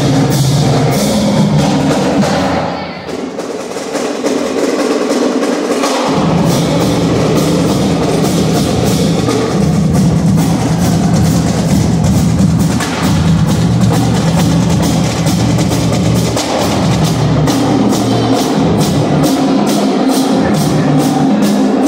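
Marching band playing, brass (sousaphones, trumpets, baritones) over marching bass drums and snares keeping a steady beat. About two seconds in the low brass drops out and the sound thins and quietens; the full band comes back in at about six seconds.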